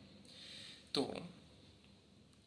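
Speech only: a pause in a man's talk, a soft intake of breath, then one short spoken word about a second in.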